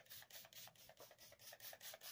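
Kryolan Ultra Setting Spray pump bottle spritzing onto a face in a quick, faint run of short hissing sprays, about six a second.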